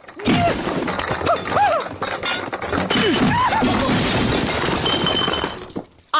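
Cartoon crash sound effect of a stack of crates and glass bottles toppling: a long run of crashing, clattering and breaking glass that stops just before the end.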